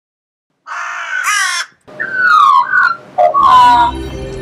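Crows cawing: a run of separate calls starting just under a second in, several of them falling in pitch.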